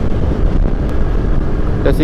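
Wind rushing over the microphone with the engine and road noise of a moving motor scooter, a steady, dense rumble.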